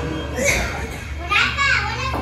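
Children's voices talking and calling out, with a higher-pitched call about a second and a half in.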